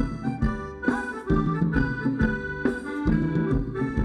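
Live band playing Thai ramwong dance music: a sustained melody over a steady drum beat.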